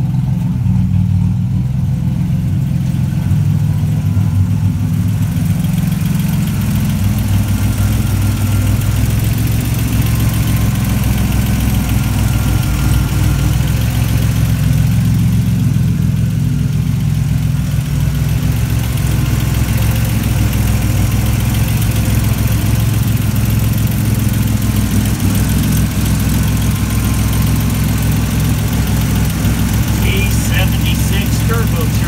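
Turbocharged 4.1-litre (274 cubic inch) stroker Buick V6 idling steadily, its even note sitting low.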